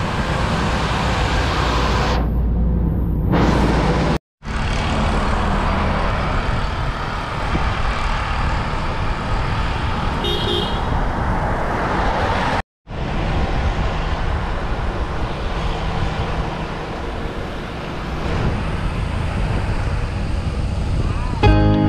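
Steady wind and road rush on the microphone of a camera riding along on a bicycle over a wet road. A short pitched beep sounds about ten seconds in, and the sound cuts out briefly twice.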